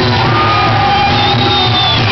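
Live Irish folk-rock band playing loud through a PA, with long held melody notes over a steady band accompaniment.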